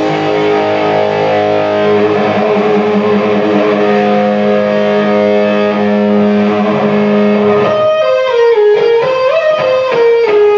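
Live instrumental heavy-metal band led by electric guitar: the guitar holds long sustained notes over the band, then about eight seconds in breaks into a fast lead line of quickly changing notes.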